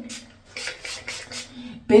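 A few short, soft noises from a protein spray treatment being applied to wet, curly hair.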